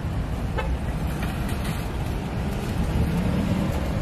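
Steady low vehicle rumble heard from inside a car with its window down, with a faint hum running through the second half.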